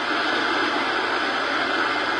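Steady rushing noise of surf washing up on a sandy beach.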